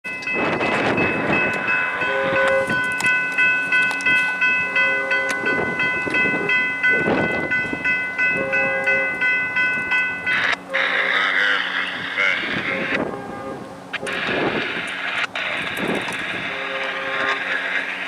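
Grade-crossing warning bell ringing rapidly as the crossing gates come down, stopping abruptly about ten seconds in once the gates are lowered. Wind and road noise continue after it stops.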